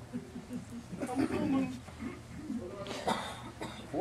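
Indistinct vocal sounds from people in a small room: short murmurs and grunts rather than clear words, with a brief sharp vocal burst about three seconds in.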